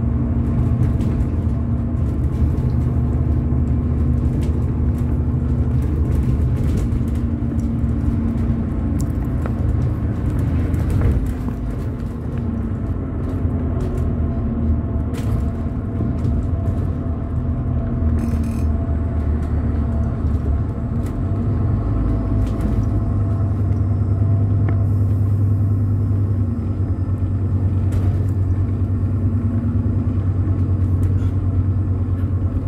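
A bus running along the road, heard from inside on the upper deck. There is a steady low engine and road rumble, with occasional light rattles from the body. The low drone deepens and grows stronger about two-thirds of the way through.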